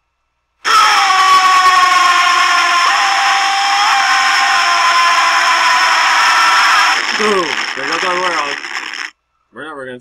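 Loud, harsh, distorted sustained sound from a YouTube Poop edit, several slowly falling tones held for about six seconds, then a voice with swooping pitch that cuts off abruptly.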